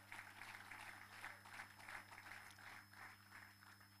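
Near silence: a faint steady electrical hum from the sound system, under faint scattered applause.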